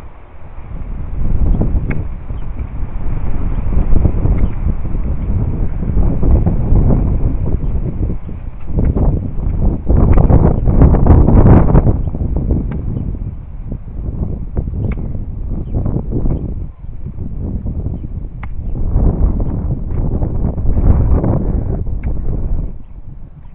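Wind buffeting the microphone in loud, gusting low rumbles that swell and fade over several seconds. A few faint knocks, a hoe chopping into soil, come through it.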